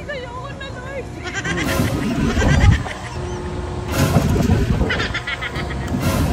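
Drop tower riders laughing in pulsed bursts and letting out wavering cries, with a steady low wind rumble on the phone microphone.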